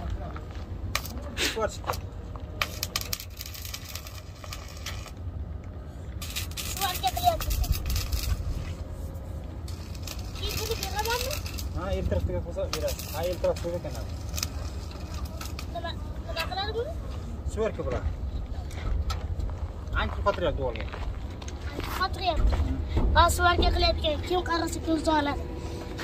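Voices talking intermittently over a steady low rumble of wind on the microphone, with a few sharp clicks and knocks.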